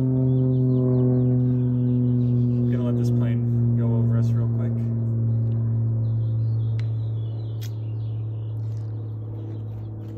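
A steady, low-pitched humming drone with overtones that fades gradually in the second half, with a few faint bird chirps.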